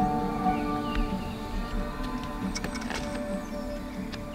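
Background music with sustained, held notes that slowly fade away.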